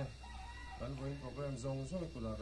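A man's voice speaking in phrases over a loudspeaker, leading a prayer.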